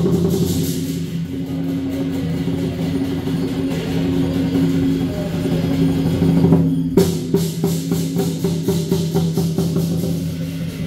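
Lion dance percussion: a big drum played in a rapid, continuous roll over low ringing tones. About seven seconds in, sharp clashing strikes join in a steady beat, a few a second.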